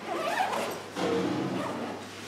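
Zip on a soft instrument case being pulled open in two rough stretches.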